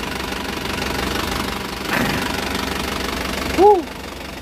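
Isuzu Elf NLR 55 BLX four-cylinder diesel engine idling steadily, heard close up in the open engine bay. The engine is warm, and the reviewer judges it sound, with no blow-by.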